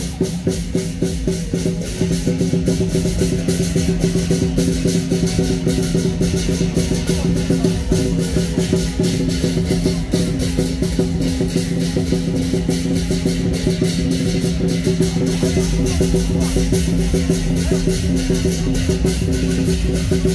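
Lion dance percussion: a large drum with cymbals and gong struck in a fast, dense, unbroken rhythm, with a steady ringing tone beneath the strikes.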